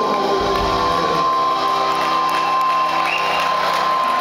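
A rock band's electric guitars and keys hold a ringing chord with a steady high sustained note at the close of a song, while a crowd cheers and whoops over it, with a couple of short whistles.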